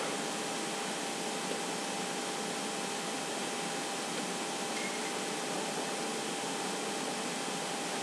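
Steady background hiss with a faint steady hum tone underneath, with no distinct events: room tone.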